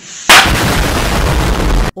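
Loud anime blast sound effect: a sudden explosion-like impact about a third of a second in, followed by a rumbling roar of noise that cuts off abruptly near the end.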